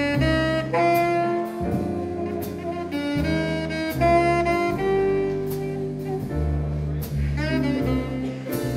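Jazz ballad played live: alto saxophone carrying the melody in long held notes over piano chords and double bass.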